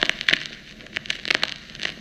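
Surface noise of a Dictabelt recording playing back in a gap in the dictated speech: a faint hiss with scattered clicks and crackles.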